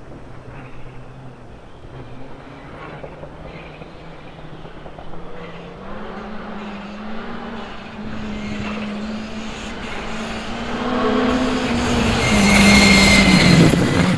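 Skoda Fabia R5 rally car's turbocharged four-cylinder engine running hard as the car approaches at speed. Its sound grows steadily louder, and is loudest in the last couple of seconds as the car comes close.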